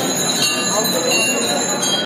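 Hindu temple bells ringing on and on, high metallic tones held steady over the chatter of a crowd.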